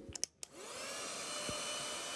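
Portable handheld vacuum cleaner switched on after a few clicks: its motor spins up with a rising whine about half a second in, then runs at a steady whir.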